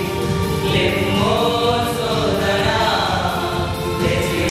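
A group of young men singing a Christian song together in Telugu, held on sustained sung notes.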